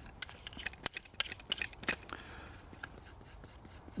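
Light metallic clicks and scrapes of a direct-thread 5.56 suppressor being screwed onto an AR-15's half-by-28 muzzle threads: a string of irregular ticks in the first two seconds, fading to faint handling noise.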